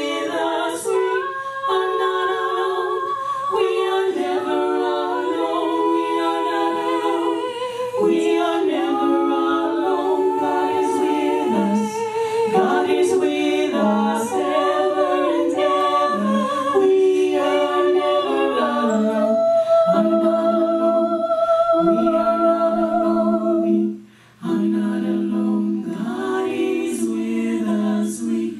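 Female vocal quartet singing a cappella in harmony, with vibrato on long held notes. The voices stop briefly near the end, then come back in.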